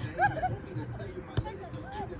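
Players' voices calling out across an outdoor soccer field, short scattered shouts at a distance. There is one sharp knock about one and a half seconds in.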